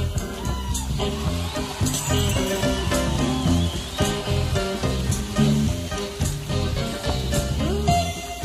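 Blues band recording: electric guitar playing lead lines with bent notes over bass and drums.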